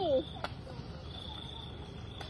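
Crickets trilling in one steady high note over low background noise, with a single sharp click about half a second in.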